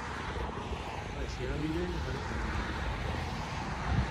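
Steady, even rushing noise with a low rumble beneath it, the kind made by an airplane passing high overhead or by wind, with faint far-off voices about halfway through.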